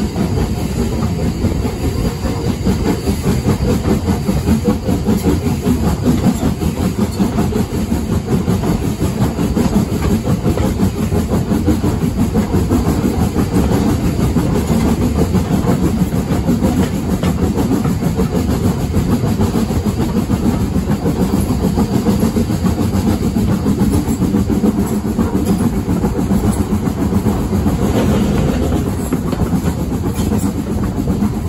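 Heritage railway coach running along the line, heard at an open carriage window: a steady, loud rumble of wheels on the rails.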